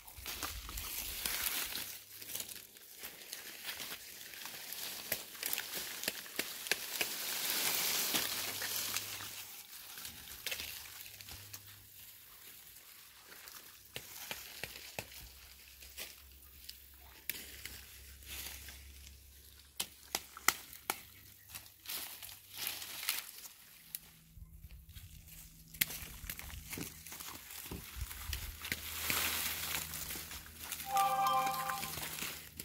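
Dry, dead garden plant stalks rustling, crackling and snapping as they are pulled out of the bed by hand and dragged across the dry debris, in irregular bursts with many small cracks.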